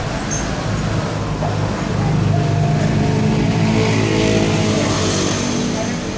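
A steady low engine-like hum with a noisy wash over it, growing a little louder about two seconds in.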